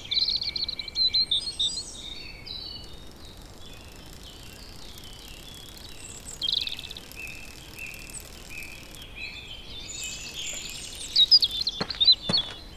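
Rural ambience of many small birds chirping and twittering, busiest at the start, about six and a half seconds in and again near the end, over a faint steady background. A sharp click comes right at the end.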